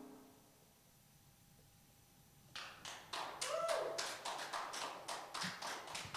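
Near silence for about two and a half seconds, then sparse applause from a small audience, the separate claps distinct and uneven.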